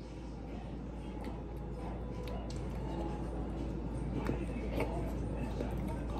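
Quiet room sound: a steady low hum that swells slowly, with a few faint clicks and soft voice sounds.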